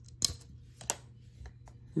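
Two sharp plastic clicks, about two thirds of a second apart, from the axis locks of a Zhiyun Crane M3 gimbal being released by hand.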